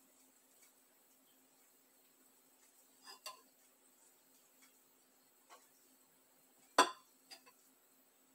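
A glass jar clinking against glassware as steeped herbs are tipped out of it: a pair of soft clinks about three seconds in, a faint one a little past five, then the loudest, a single sharp clink, near seven seconds, followed by a smaller one.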